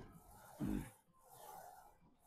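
A man breathing hard under load during a set of hack squats: a short, voiced exhale that falls in pitch about two-thirds of a second in, with breathy inhaling before and after. It is one rep's effort in a series that comes about every two seconds.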